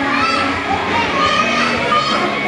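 A group of young children's voices, talking and calling out together.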